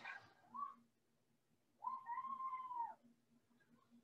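A cat meowing once: a single call about a second long that rises and then falls, midway through, over a faint steady hum.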